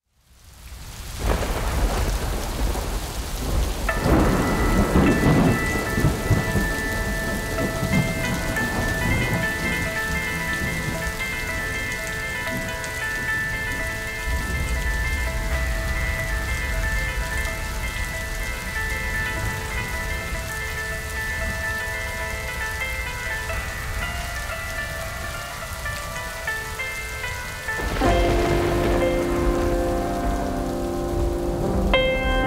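Steady rain with a low rumble of thunder in the first few seconds. After about four seconds, high sustained ringing tones join the rain. Near the end, lower piano notes come in.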